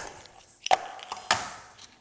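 Kitchen knife cracking the shell of a cooked lobster's knuckle on a cutting board: two sharp knocks about half a second apart, the second followed by a short scrape.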